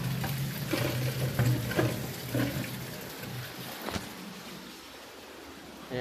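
Running water and the steady low hum of a pump motor at a water refilling station. Both fade out a little past halfway, with a single sharp click near the fourth second.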